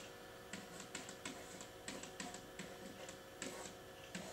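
A pen tapping and scratching on an interactive whiteboard as figures and brackets are written: a run of faint, irregular clicks and short scrapes.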